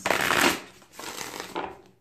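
A tarot deck being shuffled by hand on a table: a dense burst of card noise in the first half-second, then a softer rustle of cards about a second in.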